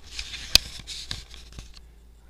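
Handling noise from a handheld camera being swung around: rustling and scraping, with one sharp click about half a second in and a few small ticks after.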